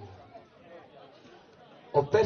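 Faint chatter of voices in a quiet lull, with no music playing; the band's guitar and vocals come in suddenly right at the end.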